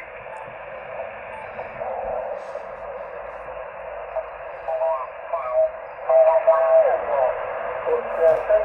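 Yaesu FT-817 HF transceiver's speaker receiving the 40 metre sideband: a steady band-limited hiss of band noise, with the distorted voices of other sideband stations coming through from about halfway on. The band is busy.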